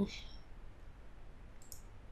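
Two quick, light computer mouse clicks near the end, over a faint steady low hum.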